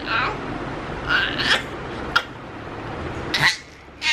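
Seven-month-old baby making a few short, high-pitched squeals and babbling sounds, with a sharp click about two seconds in.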